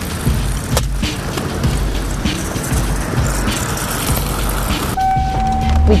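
Skate wheels rolling and rumbling on a concrete bowl, with scattered clacks and knocks of boards and landings, over background music. About five seconds in, the sound cuts abruptly to a steady tone.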